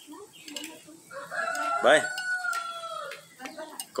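A rooster crowing once: a single long call of about two seconds, starting about a second in.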